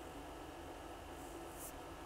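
Faint room tone: a steady hiss with a low hum underneath, and a faint brief rustle a little over a second in.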